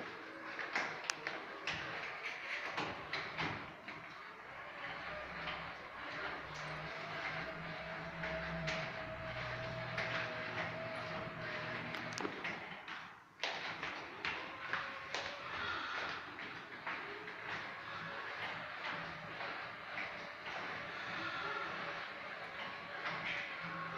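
Electric drive of a Caterwil GTS3 tracked stair-climbing wheelchair whining as it moves down the stairs, with scattered knocks and clicks. The whine holds steady for several seconds in the middle and cuts off abruptly a little past halfway, then a fainter whine runs on.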